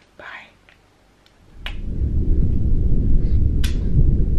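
A brief breathy whisper, then from about a second and a half in a loud, steady low rumble of handling noise as the recording device is moved against the bedding, with a couple of faint clicks.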